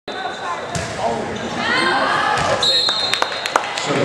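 Volleyballs thudding off hands and the gym floor, several sharp knocks a second or so apart, over people talking in the hall.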